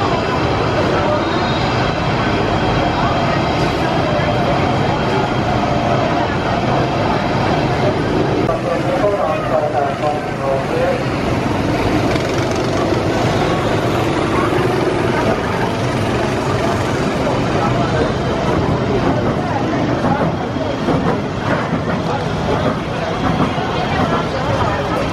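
Steady, loud outdoor amusement-park background noise with indistinct voices.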